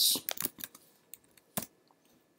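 A few keystrokes on a computer keyboard, short separate clicks with the firmest press about one and a half seconds in.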